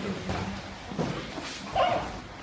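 Grapplers scuffling on a foam mat, with a thud about a second in and a short, high yelp near the end.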